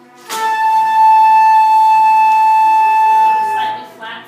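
Flute holding a single steady high note for about three seconds, begun with a sharp breath attack just after the start and released near the end. It is picked up close through a contact microphone clipped to the flute: a sustained tuning note for an intonation check.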